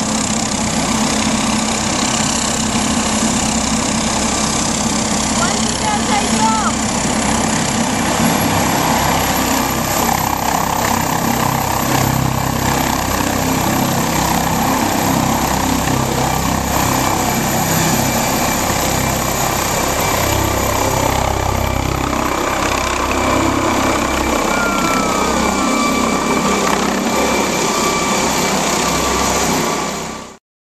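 Twin-turbine MD Explorer air ambulance helicopter running at take-off power and lifting off. A steady high turbine whine sits over the low pulsing of the rotor wash, and the whine rises slightly about eight to ten seconds in.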